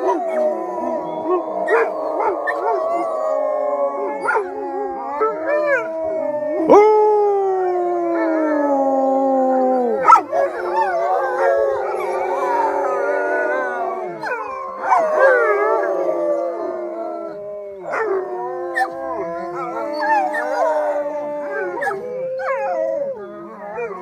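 A pack of wolves howling in chorus: several long howls at different pitches overlap, rising and falling, with one long howl sliding steadily downward a third of the way through.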